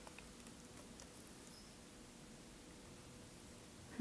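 Near silence: room tone with a few faint clicks in the first second and a half, keyboard keystrokes while typing in a code editor.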